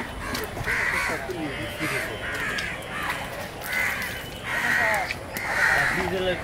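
Crows cawing over and over, a run of harsh calls coming about every half second to a second, with voices faint behind.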